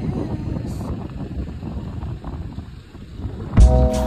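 Low, uneven rumble of wind buffeting a phone microphone outdoors; music with a heavy beat cuts in near the end.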